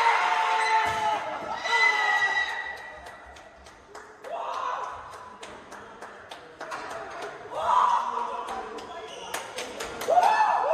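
A man's loud, high-pitched yell, long and wavering, with two shorter cries after it, over scattered sharp clicks and knocks. It is the kind of shriek that is jokingly likened to a water deer's scream.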